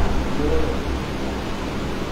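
Steady background hiss with a low electrical hum, from a sound system or recording chain, with a brief faint voice near the start.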